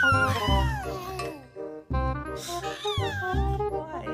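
Two long cat meows, each falling in pitch, over background music with a steady beat. The first is already sounding at the start and fades about a second and a half in; the second starts about two and a half seconds in.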